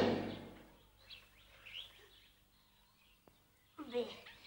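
A voice dies away at the start, then faint, brief bird-like chirps over a quiet background, with a single small click and the start of a voice near the end.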